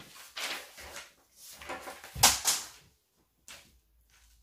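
Handling noise of a plastic French curve ruler being brought across brown pattern paper on a wooden table: rustling and sliding, with the loudest knock a little over two seconds in and a brief scrape near the end.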